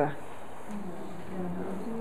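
A person's faint, drawn-out closed-mouth "mm", the start of an agreeing "mm-hmm", a low steady hum beginning just under a second in.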